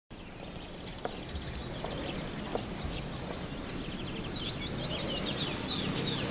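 Small birds chirping in quick high runs, thickest in the second half, over steady outdoor background noise, with a few soft knocks in the first half.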